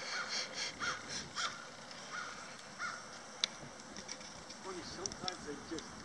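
Crows cawing, a run of short calls close together at first that thins out later, with one sharp click about three and a half seconds in.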